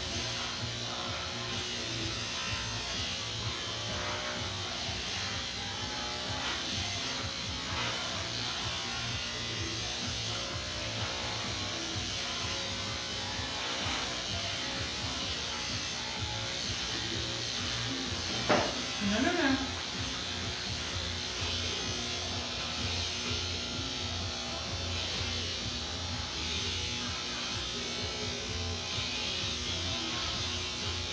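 Cordless electric pet clippers buzzing steadily as they are run through a flat-coated retriever's thick black coat, with music playing underneath. About two-thirds of the way through there is one louder moment: a sharp click, then a brief sound that bends up and down in pitch.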